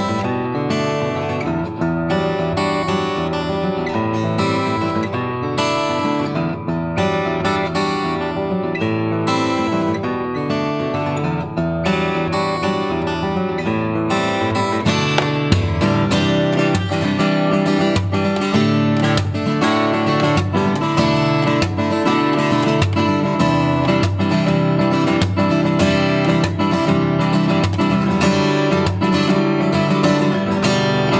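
Solo dreadnought steel-string acoustic guitar playing a fingerstyle piece with plucked melody and bass notes. The playing grows denser and a little louder about halfway through, with quick strokes across the strings.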